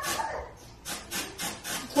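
Aerosol root cover-up hair colour spray, let off in short hissing bursts, about three a second, as it is sprayed onto the hair.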